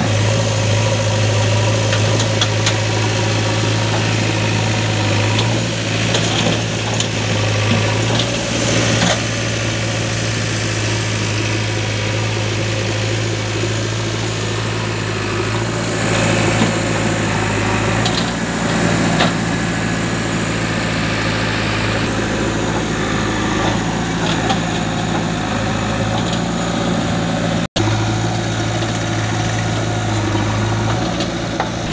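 Diesel engines of a JCB 3DX backhoe loader and a John Deere 5105 tractor running side by side, a steady low engine hum with a few brief knocks during loading.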